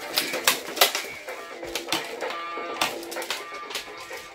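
Toy electric guitar playing electronic guitar notes, with sharp plastic clicks and taps as it is strummed and pressed.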